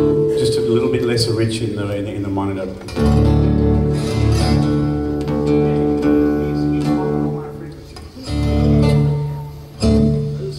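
Acoustic guitar playing a melody over ringing sustained chords. New chords are struck about three seconds in, again near eight seconds and once more just before the end.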